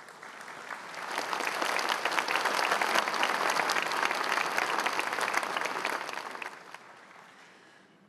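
A large seated audience applauding. The clapping builds over the first second, holds steady, then dies away over the last two seconds.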